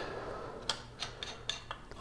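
A steel turning gouge being slid and seated into a sharpening jig: faint rubbing with several light metallic clicks from about a second in.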